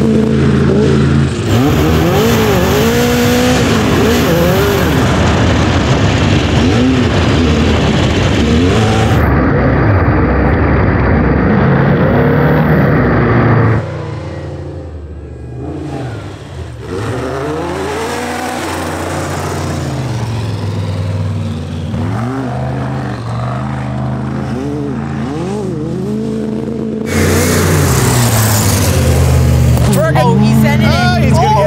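A methanol-burning sandrail and a Jeep Wrangler JK off-road race rig racing over a dirt course with whoops. Their engines rev up and down repeatedly as they run through the bumps. The engines are quieter for a stretch about halfway through, then loud again near the end.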